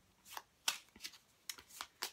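A small pack of Rider-Waite tarot cards, the Major Arcana only, being shuffled by hand: a few soft, irregular card slaps and clicks.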